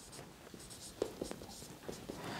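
A marker pen writing on a whiteboard: faint, short strokes, with a small cluster about a second in and another near the end.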